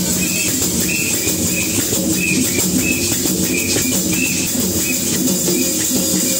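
Loud, continuous church worship music played on drums and hand percussion, with a quick repeating beat.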